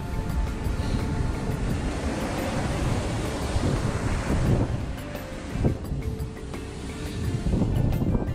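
Wind buffeting the microphone over the wash of surf on a beach, under background music, with a couple of short knocks about halfway through.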